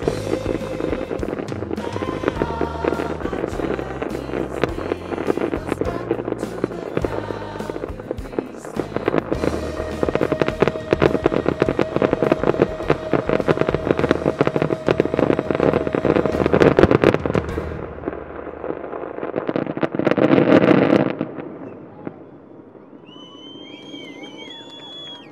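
Fireworks finale: dense rapid crackling and bangs of aerial shells over a music soundtrack, with the crackle thickest from about ten seconds in. A last loud swell cuts off sharply near the end, leaving quiet with a few thin high whistles.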